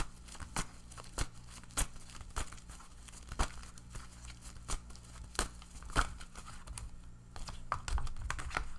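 A deck of tarot cards being shuffled by hand: the cards rustle and slap together, roughly three slaps every two seconds, over a faint steady low hum.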